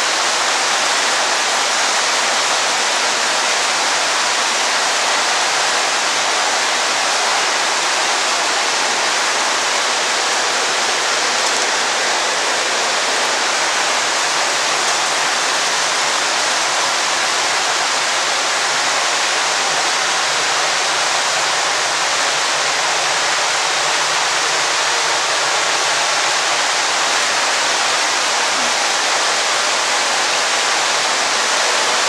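Steady rushing of water, an even hiss that never breaks or changes.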